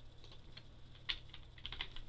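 A quick run of keystrokes on a computer keyboard, starting about a second in: a short word being typed. The clicks are faint, over a low steady hum.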